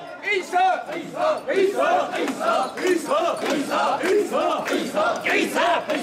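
Crowd of mikoshi bearers shouting a rhythmic carrying chant in chorus, with overlapping shouts coming several times a second at a steady pace.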